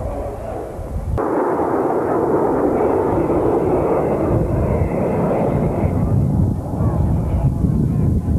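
A formation of North American Harvard trainers flying overhead. From about a second in, their Pratt & Whitney Wasp radial engines and propellers make a loud, steady, rasping noise.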